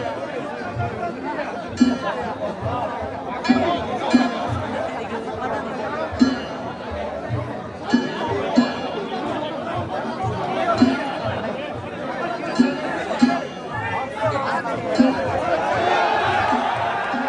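Danjiri float's drum and gongs beating a slow rhythm, strokes often in pairs about every two seconds, over the chatter of a dense crowd.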